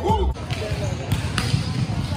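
A song cuts off after a moment, giving way to the echo of a large gym hall: volleyballs thudding as they are hit and bounce on the court floor, under a background of voices.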